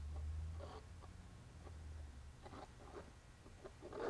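Faint, soft scratches and ticks of a clay sculpting tool dragged through thick acrylic tar gel on a canvas, over a low hum that stops about halfway through.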